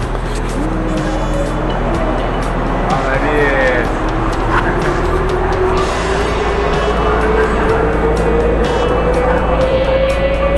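Monorail train running, with a steady rumble and a motor whine that rises slowly and evenly in pitch from about four seconds in as the train gathers speed. Background music plays along with it.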